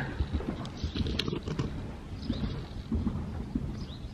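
A horse's hooves thudding on a soft sand arena surface, an uneven run of low muffled thumps with a few light clicks.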